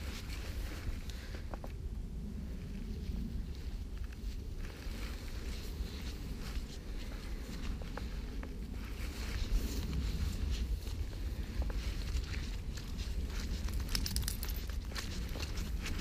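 Footsteps walking through grass on a path, with irregular rustling and faint clicks, over a steady low rumble.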